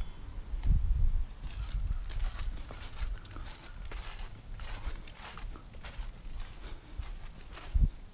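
Footsteps swishing through grass as a person walks, over a low rumble on the microphone, with a dull thump about a second in and another near the end.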